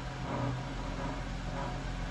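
2010 Chrysler 300's engine idling, a steady low hum.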